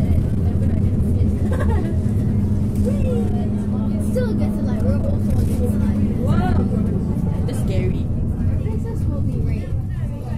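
Isuzu bus engine and drivetrain running under way, heard from inside the cabin as a steady low drone, with a steady hum in it that stops about six seconds in. Indistinct voices are heard over it.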